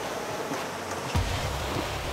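Steady rush of wind and water from a boat running across open water, with a single dull low thump about a second in.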